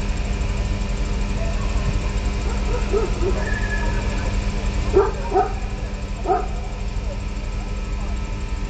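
A dog barking a few times, short single barks about three, five and six seconds in, over a steady low rumble with a faint hum.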